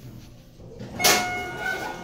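1995 Schindler hydraulic elevator arriving at a floor: about a second in, a sudden clunk with a brief ringing tone, then the car doors sliding open.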